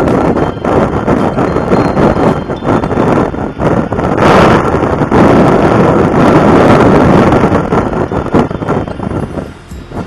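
Wind rushing and buffeting over the microphone of a Yamaha Mio Gravis scooter cruising at about 65 km/h, with vehicle noise underneath. It is loudest from about four seconds in to about seven and a half, then eases near the end.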